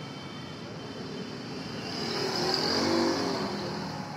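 A motor vehicle passing by: an engine note that swells in the middle, peaks about three seconds in, and fades again.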